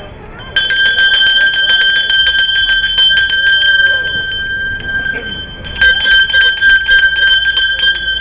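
Town crier's handbell rung rapidly and continuously, a fast run of clapper strikes over one steady ringing tone, starting about half a second in and easing off briefly around the middle before picking up again.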